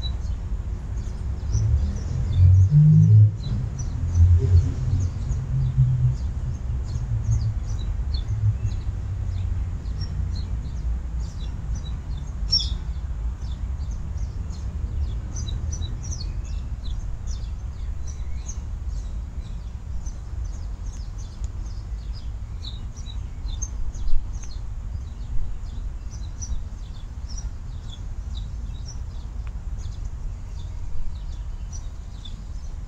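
Small birds chirping in many quick short calls, over soft background music whose low notes stand out in the first several seconds, with a steady low rumble underneath.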